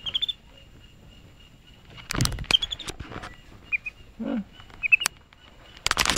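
Capuchin monkey giving a few short high chirps, with scrabbling knocks on the phone as the monkey gets at it, loudest about two seconds in and near the end.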